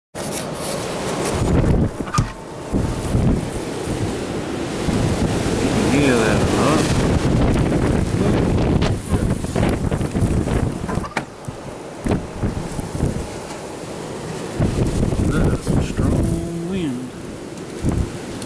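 Storm wind gusting hard and buffeting the microphone: a loud, uneven rumbling rush that swells and eases, with a few sharp clicks.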